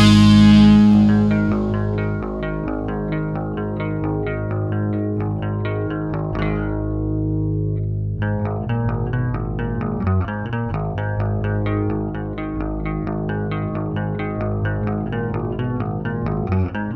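Instrumental passage of a heavy metal song with no vocals. A loud chord at the start dies away, then electric guitar plays a steady run of notes over bass guitar. The guitar notes thin out for a second or two midway before picking up again.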